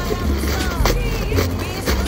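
Background music with a deep bass and a steady beat.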